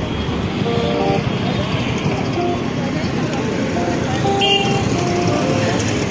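Busy street ambience: traffic running and voices of people around, with short steady tones scattered through it and a brief click about four and a half seconds in.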